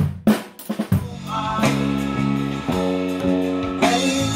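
Acoustic drum kit struck during a studio sound check: a few sharp hits in the first second, the first two loudest. Held pitched notes then take over, changing every half second or so.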